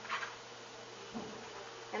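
Quiet room with a steady faint electrical hum; a brief rustle near the start and a soft low bump about a second in as a woven basket of pencils is lifted down from a shelf.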